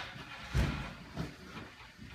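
A low thump about half a second in, then a softer knock, over a steady background noise.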